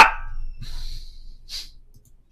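Breath sounds close to a microphone: a man's last word trails off, then a soft exhale, then a short sharp intake of breath about a second and a half in.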